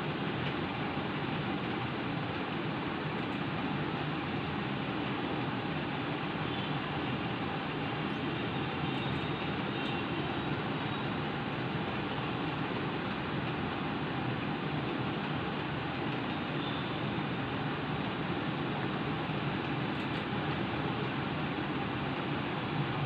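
Steady rushing background noise, even throughout, with no distinct events standing out.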